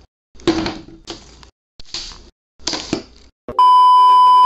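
Four short bursts of clattering noise, then, about three and a half seconds in, a loud steady high beep: the television colour-bar test tone.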